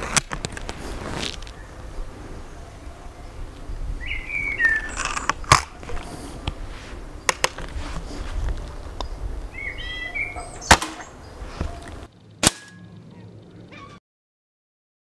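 Remington Express break-barrel .177 spring-piston air rifle being handled and fired: sharp clicks as it is cocked and the barrel is snapped shut, then the single shot about eleven seconds in. About a second and a half later a pellet strikes the paper target with a short crack. Birds chirp briefly twice.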